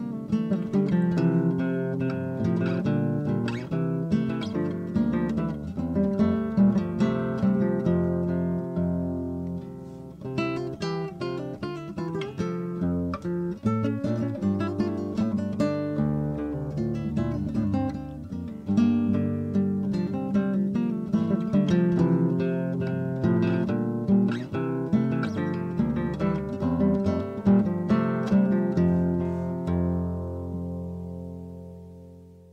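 Background music played on acoustic guitar: a continuous run of plucked notes that ring and fade one after another.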